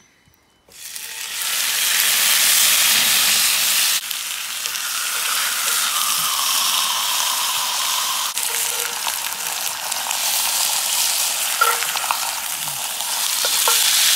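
Glazed pork chops sizzling in hot oil in a cast-iron skillet over charcoal, the sizzle starting suddenly about a second in as the meat goes into the pan and then holding loud and steady. A few faint clicks come near the end.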